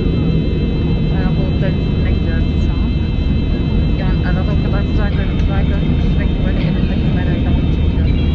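Airliner cabin noise in flight: a loud, steady low rush from the jet's engines and the airflow, with quiet talking over it.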